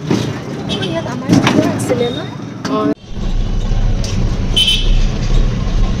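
Street traffic heard from inside a moving rickshaw: voices for the first half, then, after a sudden break, a steady low rumble of the ride with a short high-pitched toot about two-thirds of the way through.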